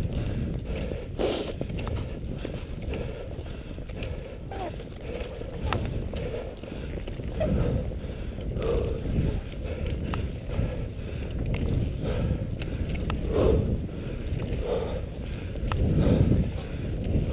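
Cross-country skis gliding over a snowy trail: a steady low rush, with a recurring swish every second or so as the skier strides and a few sharp clicks.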